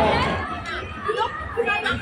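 Children's and adults' voices talking and calling out during an outdoor game, with a high-pitched child's voice among them.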